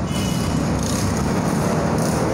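Massey Ferguson 385's Perkins four-cylinder diesel engine running steadily at idle.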